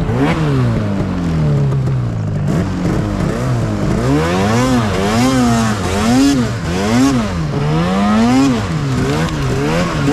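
Arctic Cat mountain snowmobile's two-stroke engine revving up and down as it is ridden through deep powder. The pitch sags over the first two seconds, then rises and falls about once a second as the throttle is worked.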